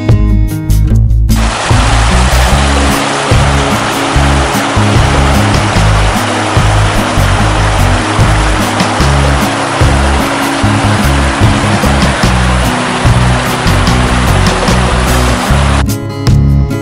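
Rushing water of a river running over rock rapids, a steady hiss that starts about a second in and cuts off just before the end, mixed with background music.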